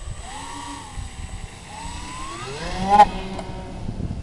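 Twin 1400KV brushless electric motors with 10x4 three-blade propellers on a radio-controlled ATR 72-600 model whining up in pitch as the throttle opens for takeoff, after a brief lower blip near the start. A sharp knock about three seconds in is the loudest moment.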